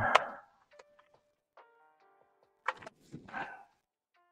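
A sharp click about two and a half seconds in, then a short scraping press: a keyboard switch being pushed into the board's Outemu-style hot-swap sleeves. Faint soft notes sound underneath.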